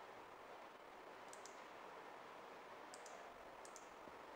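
Near silence: faint room tone with three pairs of quiet computer-mouse clicks, the first about a second in and the other two close together near the end.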